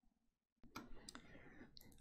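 Near silence, then a few faint clicks over low room noise from about half a second in.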